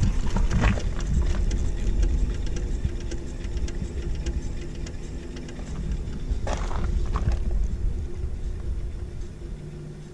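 A trailer wheel spinning freely on its hub bearing after being turned by hand: a low rumble with a faint steady hum and light irregular ticking that dies down toward the end. A brief rustle about six and a half seconds in.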